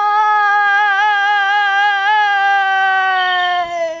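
A woman's long, loud, drawn-out wail, held on one wavering pitch, sliding down and fading just before the end.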